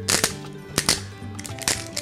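Pepper mill grinding pepper onto a raw egg, heard as a few sharp crunching cracks over steady background music.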